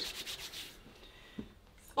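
Palms rubbed briskly together to warm cold hands: a quick, even swishing rhythm that stops a little under a second in, followed by near quiet and one faint tap.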